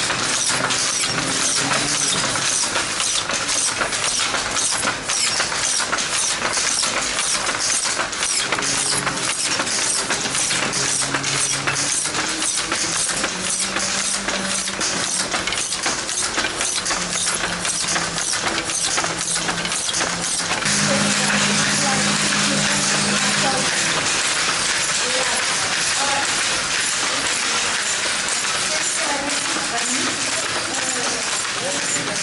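Wooden handlooms weaving silk, clattering in a dense, uneven run of sharp clacks that gives way to a steadier hiss about twenty seconds in, with voices underneath.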